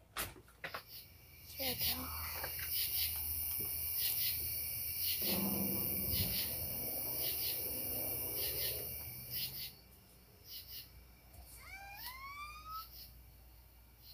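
Night insects calling in a high, shrill chorus that pulses about one and a half times a second, fading out around ten seconds in. A short rising whine-like call sounds near the end.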